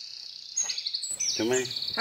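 Small birds chirping in quick repeated high notes in the background, with a voice starting to speak just after a second in.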